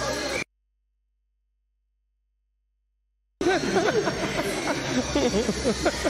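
Arena voices and crowd noise cut out completely about half a second in, leaving about three seconds of dead silence, a dropout in the broadcast audio. Voices and crowd noise then come back abruptly.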